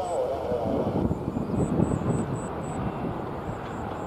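Jet engine rumble of a Hawaiian Airlines Airbus A330 moving along the runway, a steady broad roar with no sharp events.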